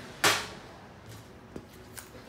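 Brief handling noise: one short rustling burst about a quarter of a second in as a carburetor and a hand tool are picked up, then a faint click near the end.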